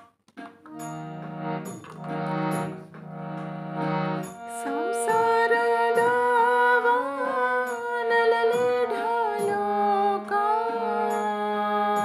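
Hand-pumped harmonium playing sustained chords. About four seconds in it gets louder and a wavering, singing melody line comes in over a held low drone note.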